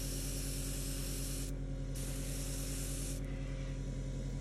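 Airbrush spraying paint in two short bursts of hiss, broken by a brief pause about a second and a half in and stopping a little after three seconds. A steady low hum from the air compressor runs underneath.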